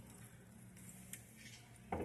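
Near silence: faint room tone with a low steady hum and a few faint ticks.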